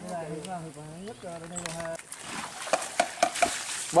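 Live fish flapping and knocking against the sides of a plastic lattice crate, with wet splashing and water running out through the lattice. It starts about halfway in.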